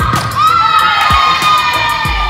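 Women volleyball players shouting and cheering during a practice rally in a gym, with drawn-out calls that glide up and hold, over background music.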